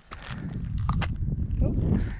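Footsteps on a concrete bank with camera-handling rumble and a few sharp clicks.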